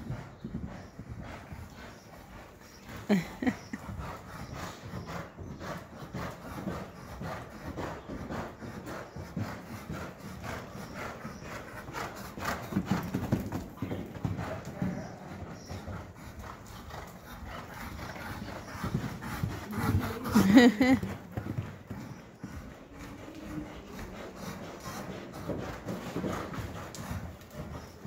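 Hoofbeats of a thoroughbred horse cantering on the dirt footing of an indoor arena, a steady run of hoof strikes that grows louder and softer as the horse passes.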